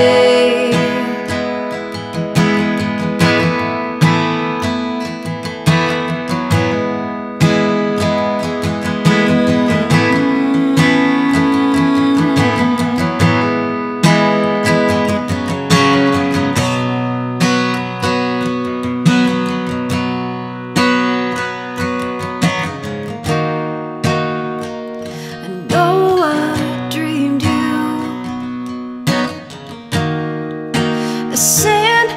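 Acoustic guitar playing strummed chords, each strum ringing and fading before the next.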